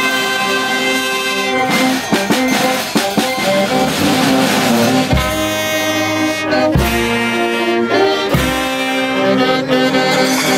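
Peruvian brass band playing live: saxophones, trumpets, trombones and sousaphones with drum kit, cymbals and congas. A long held chord opens, broken by drum strokes, and the full band with heavy low beats comes in about five seconds in.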